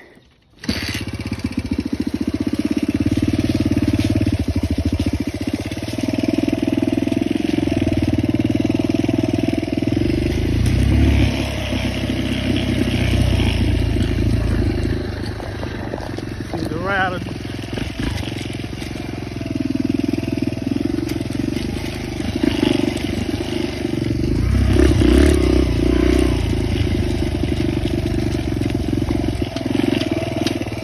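Suzuki dirt bike's engine, which comes in abruptly just under a second in and runs while the bike is ridden along a trail. Its revs rise and fall, louder in two stretches, heard from the rider's seat.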